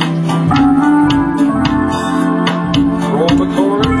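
Hammond Elegante XH-273 electronic organ being played: held chords under a melody line, with a few short upward pitch glides in the last second.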